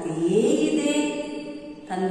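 A woman's voice reciting in a drawn-out, chant-like sing-song, holding one long steady tone that fades out just before the end.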